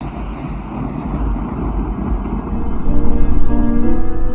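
Film soundtrack: a steady, noisy rumble like road or traffic noise starts suddenly, and held music notes come in about three seconds in, growing louder.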